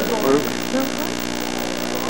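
Steady electrical hum with faint, indistinct voices over it.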